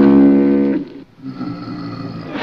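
Music of held, steady instrumental notes. A loud note rings on until just under a second in, then fainter held notes follow.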